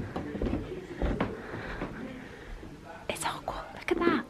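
Hushed, whispered voices, with a couple of soft thumps in the first second or so and a breathy whisper about three seconds in.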